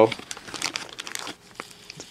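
Thin plastic carrier bags crinkling and rustling as hands rummage through them, a run of quick crackles that dies down after about a second.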